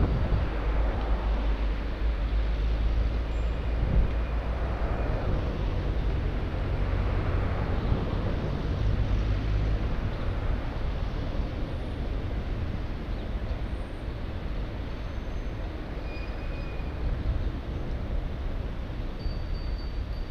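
Road traffic running alongside a moving bicycle, with low wind rumble on the microphone. The noise swells twice as vehicles pass, then settles slightly quieter toward the end.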